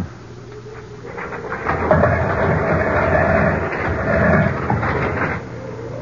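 Radio-drama sound effect of a heavy tomb door being pushed open: a long, rough rumbling scrape that starts about a second in, grows louder, and drops away to a low rumble near the end.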